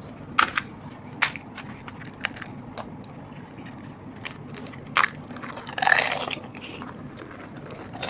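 Crisp, hollow pani puri shells being cracked open and bitten, with a few sharp single crackles and a louder, half-second crunch about six seconds in.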